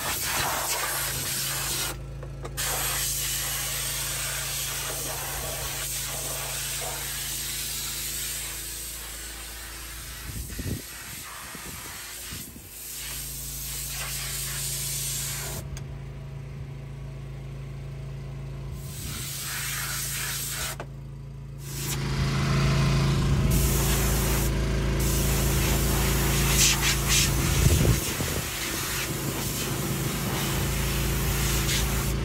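Compressed air blasting through a Freightliner semi truck's radiator from an air-hose wand: a steady loud hiss that cuts off briefly a few times and comes back, with a steady low hum underneath.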